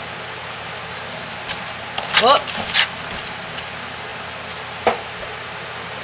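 Steady low background hum with a couple of sharp knocks, and a short "whoop" exclamation a little after two seconds in.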